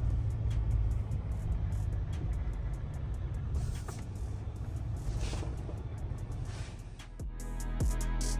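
Low rumble of the truck's Duramax diesel heard from inside the cab as it creeps forward at low speed, with music playing over it. About seven seconds in, the rumble gives way to music with a steady drum beat.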